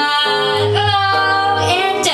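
A female jazz singer singing into a microphone, holding long sustained notes over a low instrumental accompaniment.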